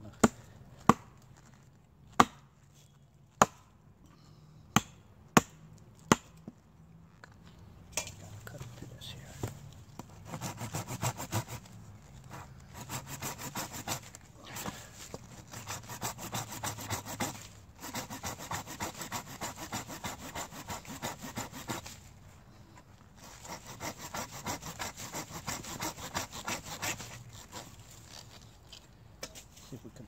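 A hand saw cutting through an old pine fatwood knot, in fast, even strokes that come in three spells with short breaks, starting about eight seconds in. Before the sawing, about seven sharp knocks on wood, a second or so apart.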